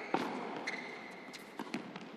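Tennis point in play on an indoor hard court: several sharp knocks of racket strikes and ball bounces, the loudest just after the start. A thin high squeak, typical of a shoe on the court, runs through the middle.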